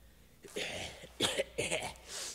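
A person coughing: three rough bursts, the first starting about half a second in.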